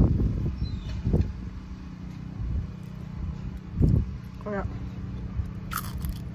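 Wind buffeting the microphone in gusts, at the start, about a second in and about four seconds in, over a steady low hum.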